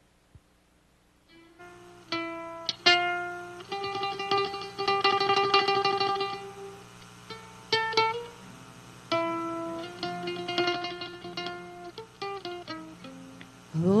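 A small band playing an instrumental hymn introduction: mandolin and acoustic guitar picking the melody, with quick repeated picking in places. It starts about a second and a half in, after near silence.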